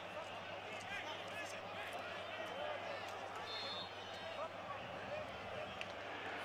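Stadium crowd noise from a football match broadcast: a steady din of many distant voices, with no clear single voice standing out.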